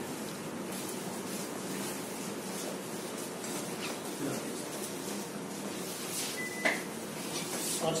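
Indistinct murmur of people's voices in a room, with no clear words. A short, high, steady tone ending in a click sounds about six and a half seconds in.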